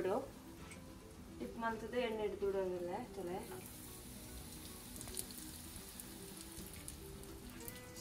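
Coated chicken kabab pieces shallow-frying in oil in a nonstick pan: a faint, steady, crackling sizzle with scattered small pops. It comes up clearly about three and a half seconds in.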